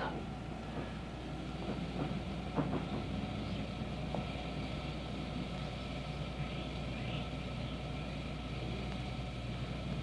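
Iron tea kettle simmering: a steady low rumble and hiss, with a few faint clicks of the tea utensils about two seconds in.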